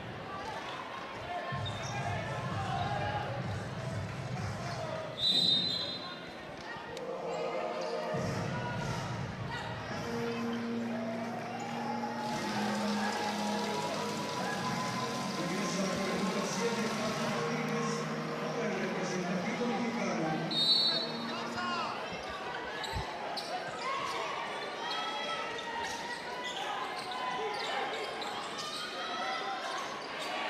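Arena sound at a basketball game during a stoppage: crowd voices and chatter throughout, with two short high whistle blasts, about five and about twenty-one seconds in. Near the end a basketball is dribbled on the hardwood court as play resumes.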